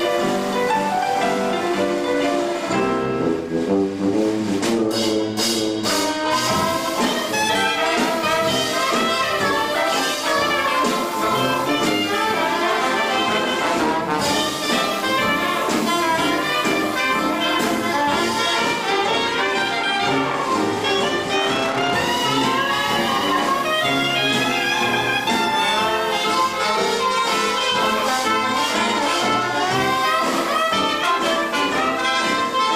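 A 1920s-style traditional jazz band playing live, with brass in front: trombone, trumpet and reeds over piano, banjo, sousaphone and drums. The texture is lighter for the first few seconds, with a few sharp drum strokes about five seconds in, and then the full ensemble plays together for the rest.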